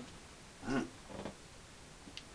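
A man's short wordless vocal sound, a low hum or grunt, a little over half a second in, with a fainter one just after.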